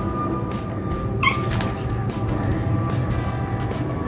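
Background music, with a pug puppy giving one short, high whimper about a second in.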